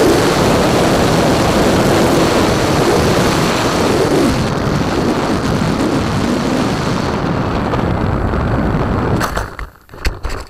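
Wind rushing over a small foam plane's onboard camera microphone, with its electric motor and propeller running; the motor sound eases off about four seconds in as the plane glides down. Near the end the noise drops suddenly and a few sharp knocks and rustles follow as the plane crashes into brush.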